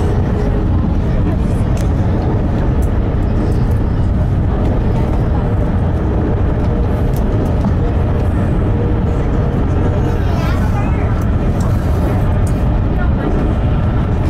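Steady low rumble and rush of an electric train running at speed, heard from inside the passenger carriage, with faint voices in the background.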